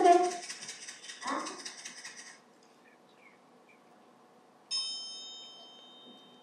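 A percussion instrument is shaken with a rattle for about two seconds, then, after a quiet pause, a triangle is struck once and rings on, its high tones slowly fading.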